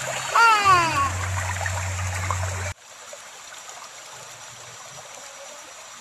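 Shallow river flowing over rocks with a small waterfall, a steady rushing hiss. A voice gives a short falling call about half a second in. The sound cuts off abruptly a little before halfway, leaving only a faint hiss.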